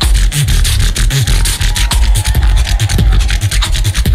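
Live beatboxing through a stage PA: rapid clicks and snare-like hits over heavy deep bass, with a faint held high tone through the middle.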